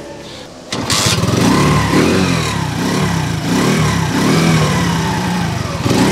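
TACTIC moped's small four-stroke single-cylinder engine starting suddenly about a second in, then running with its revs rising and falling.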